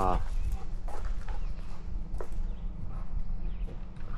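Footsteps on a dirt path, with a few faint knocks and scuffs over a steady low rumble.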